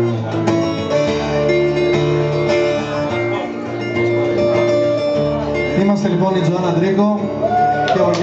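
Acoustic guitar playing chords in an instrumental passage of a live Greek song, the chords changing about once a second.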